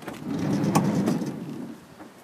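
Dodge Caravan's sliding side door rolling along its track, a low rumble lasting about a second and a half with a click partway through.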